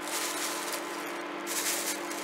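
A thin plastic bag crinkling and shelled walnut halves rustling as a hand rummages through them, in two bursts, the second near the end, over a steady low hum.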